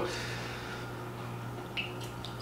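Whiskey being poured from a bottle into a tasting glass, faint over a steady low room hum, with a brief small sound near the end.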